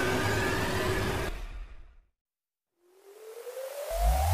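Intro sound effects: a noisy swish with faint steady tones in it fades out about two seconds in. After a short silence, a rising synth sweep climbs and runs into electronic dance music with heavy bass near the end.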